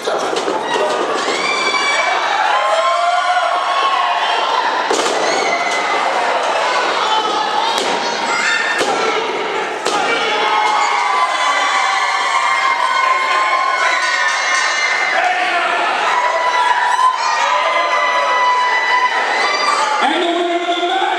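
Spectators at a wrestling show yelling and cheering, many voices overlapping throughout, with a few thuds of bodies hitting the ring mat around the middle.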